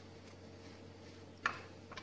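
Faint room tone with a low hum. About one and a half seconds in there is a light sharp click, and a fainter one follows about half a second later.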